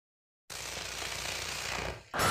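Intro of an electro-industrial track: after half a second of silence, a harsh electronic noise with a fast low rattle comes in, swells slightly and cuts off just as the full music is about to start.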